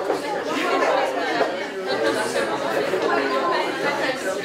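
Many people talking at once in a large hall: steady, indistinct crowd chatter of a gathering.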